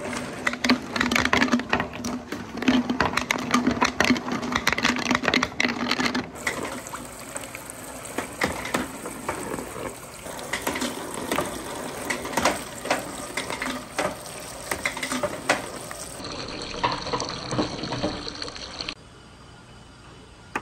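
Many small balls rolling and clattering down a perforated marble-run track, a dense rattle of clicks over a low rolling rumble. After about six seconds it thins to scattered knocks, and it drops to a faint background near the end.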